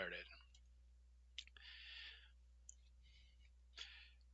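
Near silence broken by a few faint computer mouse clicks and short, soft hissing noises, the longest about two seconds in.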